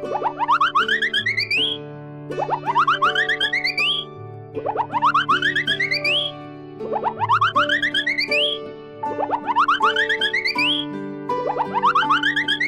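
Cartoon boing sound effects: a quick run of bouncy notes rising in pitch, repeated about every two seconds, over light children's background music.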